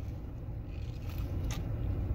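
A steady low background rumble, with a single faint click about one and a half seconds in.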